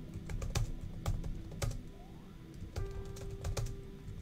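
Typing on a computer keyboard: irregular key clicks, several a second, with soft background music holding steady notes underneath.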